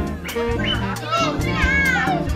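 A group of children shouting and squealing excitedly, with high, swooping cries in the second half, over music with a steady beat.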